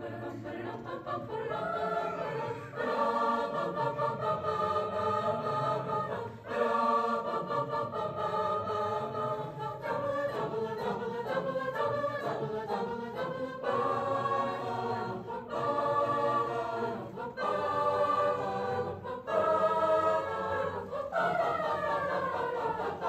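Mixed school choir singing in harmony, sustained chords in phrases a few seconds long, with a falling glide in the voices near the end.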